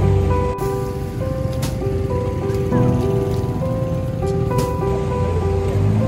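Background music: a slow melody of held notes over a steady hiss.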